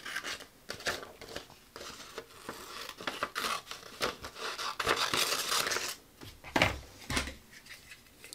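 Scissors snipping through a sheet of acrylic-painted paper, cut after cut, with the rustle of the paper being turned in the hand. Two louder knocks come near the end.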